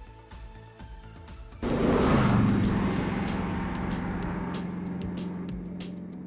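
Channel intro sting: faint background music, then about a second and a half in a sudden loud hit with a rushing whoosh. A low droning tone follows and slowly fades away.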